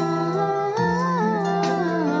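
A woman singing a wordless 'wu wu' vocalise over a pop backing track, her melody gliding up and down over steady held chords.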